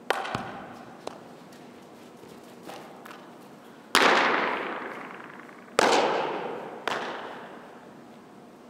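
Sharp smacks of a softball into leather gloves during a fielding and throwing drill, about five in all, each ringing on in the echo of a large indoor hall. The loudest comes about four seconds in.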